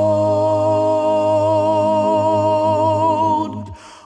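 Male a cappella vocal group, five voices with a deep bass, holding one sustained chord steady for about three and a half seconds, then releasing it together just before the end.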